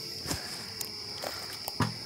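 Crickets chirring steadily in a high, even tone, with two short footfalls on gravelly ground, one just after the start and one near the end.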